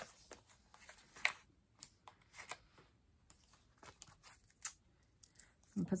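Light, scattered clicks and rustles of small cardstock pieces being handled and set down on a craft mat, a few sharp ticks a second or so apart.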